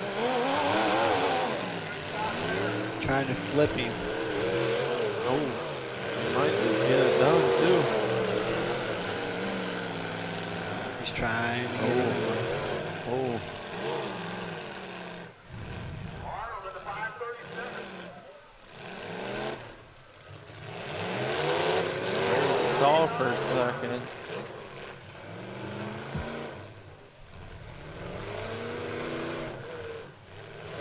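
Demolition derby car engines revving up and down hard, the pitch rising and falling again and again as the cars accelerate and back off. The engines ease off briefly about sixteen and nineteen seconds in.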